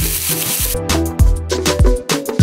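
Marinated chicken sizzling in a dry non-stick frying pan, the hiss cutting off suddenly under a second in. Background music with a steady beat, deep bass and sharp percussion carries the rest.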